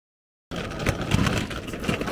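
Half a second of silence, then steady street traffic noise with a low rumble.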